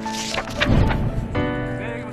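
Background music with held chords, overlaid in the first second by a rushing swish, a transition sound effect; the chord changes about halfway through.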